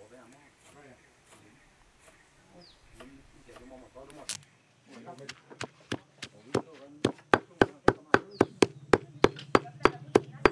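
Heavy stone pestle pounding curry paste in a stone mortar: dull, wet thuds at a steady rhythm of about three strokes a second, starting about halfway through.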